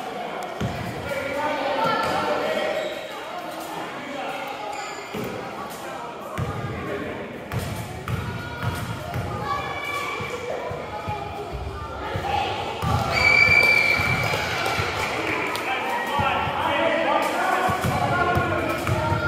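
Basketball bouncing on a hardwood gym floor among overlapping voices of players and spectators, echoing in the gymnasium. There is a short high squeak a little past the middle.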